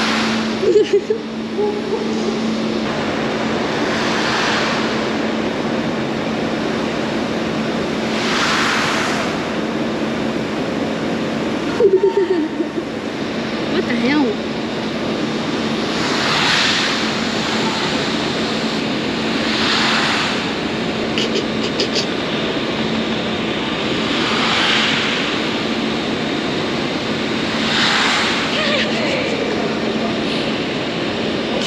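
Rolling-carpet ski slope machine running with a steady rushing noise and a low hum, while skis swish on the moving carpet every three to five seconds. Short voice sounds come about a second in and again around twelve seconds.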